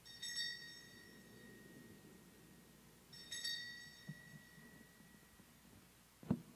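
Altar bells rung twice, about three seconds apart, each a faint bright chime that dies away over a second or two: the bells rung at the elevation of the host during the consecration.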